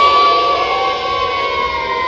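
A large crowd of young children holding one long, high-pitched cheer together; the pitch slowly sags and the sound eases off toward the end.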